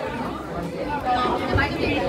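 Several people talking at once in a large room: overlapping chatter with no single clear voice.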